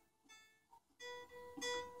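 Faint background music on a plucked string instrument, a held note ringing out about halfway through.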